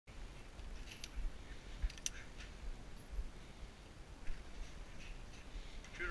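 Faint handling clicks of a pistol and its magazine at a shooting bench: a few scattered small clicks, the sharpest about two seconds in, over a low steady rumble.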